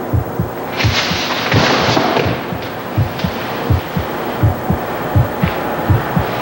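Heartbeat sound effect: a steady run of low thumps, about two or three a second, with a louder rush of hissing noise about a second in that lasts roughly a second.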